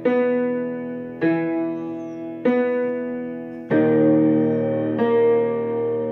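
Casio digital piano playing slow, dark held chords, a new chord struck about every 1.2 seconds and each left ringing and fading. The chord about 3.7 seconds in is fuller and louder. The piece sits in a low register, played an octave below its original pitch.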